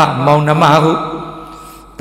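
A man's voice speaking into a microphone: a monk giving a Dhamma talk in Burmese. About a second in, his voice settles into one drawn-out, fading tone.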